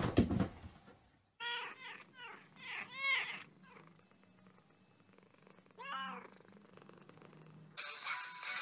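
A brief loud noisy burst at the start. Then a Persian-type cat meowing: a quick run of four or five meows, then one more about six seconds in.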